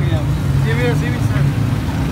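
A steady, loud low rumble, with a man's voice speaking briefly over it about halfway through.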